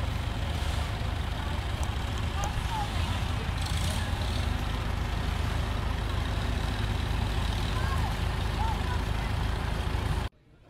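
Farm tractor engine running steadily as it pulls a trailer float slowly past, with faint crowd voices in the background.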